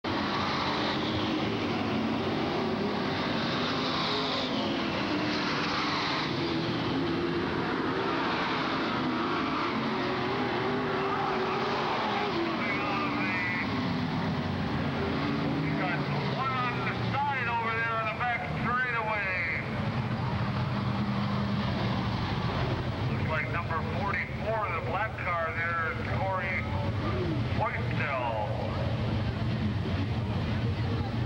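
Race car engines running at speed around the track, with rising and falling pitch as the cars pass, for about the first half. The sound then settles to a steadier, lower engine rumble, while high-pitched voices shout over it in several bursts during the second half.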